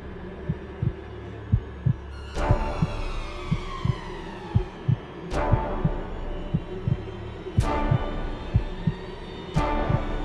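Suspense trailer underscore built on a low heartbeat-like double pulse, about one beat pair a second. Four loud hits land about two to three seconds apart, the first two trailing off in falling tones.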